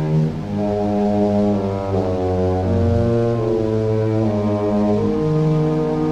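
Dramatic orchestral underscore, with low brass holding slow, sustained chords that shift about once a second.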